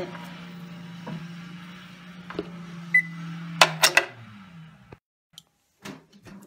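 Gold's Gym treadmill motor running with a steady hum. About three seconds in the console beeps once and a few sharp clicks follow. The motor then winds down, dropping in pitch, and stops about five seconds in, with the display back at zero.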